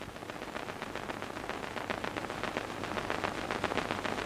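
A dense, irregular patter of many small ticks, like rain, growing slowly louder.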